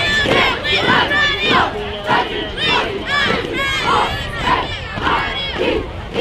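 A youth football team shouting together in unison, many high young voices in rhythmic group calls about twice a second.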